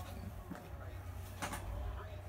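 Faint audio of a truck-race broadcast playing from a television: a low steady rumble under a faint hiss, with two faint clicks about half a second and a second and a half in.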